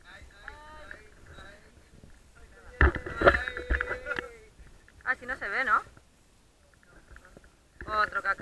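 Men's voices shouting in the open air: faint exclamations at first, then a loud drawn-out shout held on one note about three seconds in, with low thumps under it, and a wavering yell a second later.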